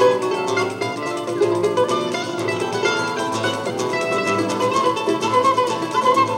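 Small acoustic ensemble playing live: a flute carries the melody over a plucked small string instrument and an acoustic guitar. The tune continues steadily with no break.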